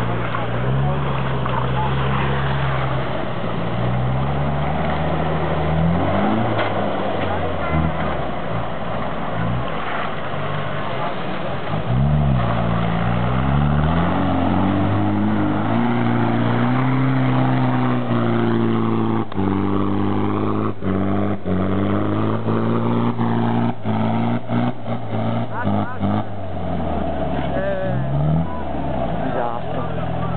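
Off-road 4x4 engine revving hard under load, its pitch rising and falling repeatedly as it claws up a steep muddy bank. A series of sharp knocks comes in the second half.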